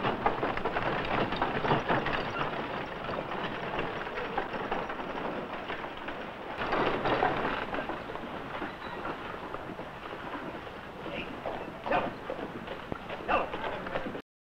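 A horse-drawn wagon rattling along a dirt street, with hoofbeats and faint voices, on a noisy old film soundtrack. A couple of sharp knocks come near the end.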